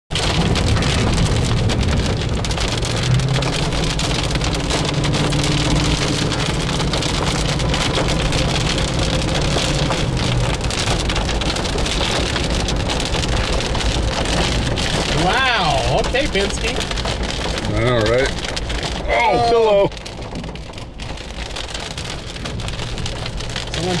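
Heavy rain pelting a moving car's windshield and body, heard from inside the cabin as a loud, steady rush. A wavering voice-like sound comes in a few short bursts in the second half, and the rain noise drops somewhat after that.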